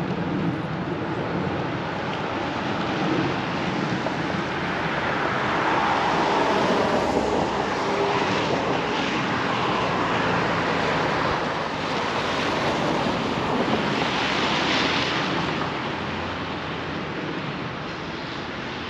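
Street traffic on wet asphalt: a steady hiss of tyres and engines that swells over several seconds in the middle and eases off near the end.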